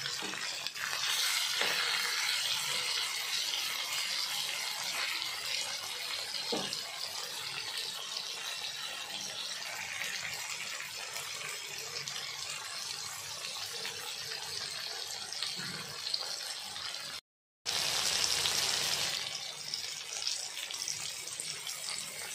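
Chicken masala with tomatoes sizzling in oil in a flat black pan: a steady hiss, broken by a brief gap about three-quarters of the way through, after which it is louder for a second or two.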